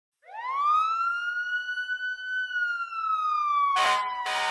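Siren-like sound effect opening a song: one long wail that rises quickly, holds, then slowly falls. It ends with a short burst of noise near the end.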